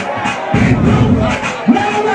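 Loud bass-heavy club music with a crowd of voices shouting and cheering over it; the bass drops out briefly near the start and again shortly before the end.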